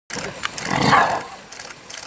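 An animal's rough, noisy call during a fight between a buffalo and a lion, swelling to its loudest about a second in and then fading.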